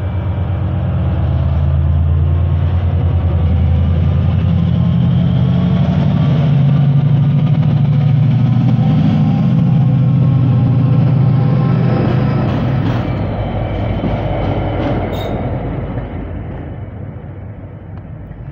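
Class 68 diesel locomotive 68013, with Class 57 57301 coupled behind, pulling out and passing close by under power. Its deep diesel engine note builds to a peak about halfway through, then fades steadily as the pair draws away.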